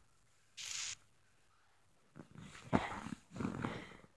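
Faint crunching and rustling of snow underfoot, with a short hiss just under a second in.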